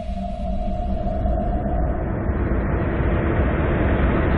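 Documentary sound design: a low rumbling drone with a held tone that fades about two seconds in, while a hissing whoosh swells steadily louder.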